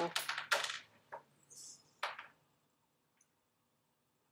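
Clattering clicks and rattles: a quick cluster in the first second, then a few single clicks up to about two seconds in.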